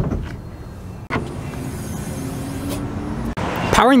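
Click and clunk of a Mercedes G63's hood release lever being pulled under the dashboard, followed by a couple of seconds of steady vehicle noise that cuts off sharply near the end.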